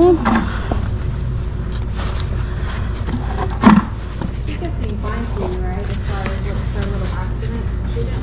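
A steady low hum, with scattered light scrapes and knocks as a horse's hoof is handled and worked on a hoof stand, and one brief louder sound a little before the middle.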